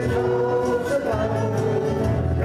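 Live country gospel band: strummed acoustic guitars under several voices singing together.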